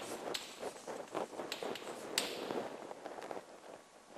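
Chalk tapping and scratching on a blackboard in a short irregular series of taps, the sharpest about halfway through.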